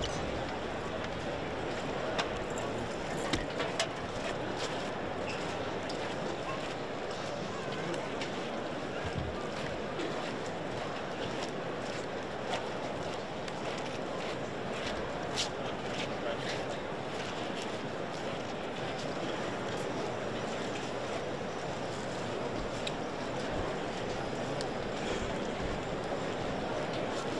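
Steady hubbub of a street crowd during a silent Holy Week procession, with no music, mixed with the shuffling steps of the costaleros carrying the paso. Scattered clicks and knocks stand out, a few of them about two to four seconds in and one near the middle.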